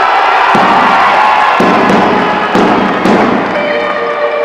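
Marching band beginning to play: drum beats roughly a second apart under held instrument tones, with crowd noise in the hall.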